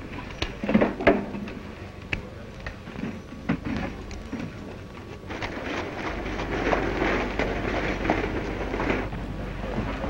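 Horses moving on a dirt street, with hooves and street noise, heard through the hiss and crackle of an old film soundtrack. The first half holds only scattered knocks. From about five seconds in a denser clatter of movement takes over.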